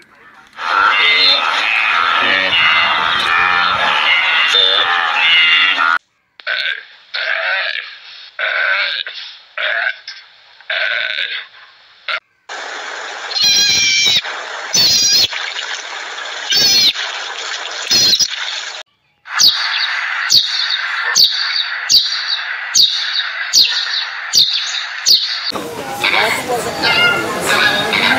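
A run of separate animal-call clips cut one after another. It opens with a herd of wildebeest calling over one another. Separate bursts of calls follow, then marmots calling with sharp clicks, and near the end a regular series of short calls less than a second apart.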